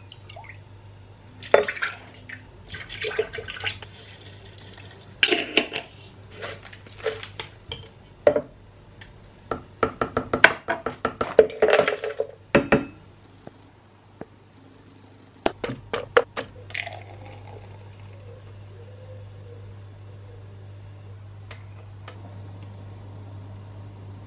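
Oat milk poured from a carton into a steel measuring cup and ingredients tipped into a plastic blender jug: pouring and a string of clatters and knocks, thickest about ten to twelve seconds in. After that, only a steady faint hum.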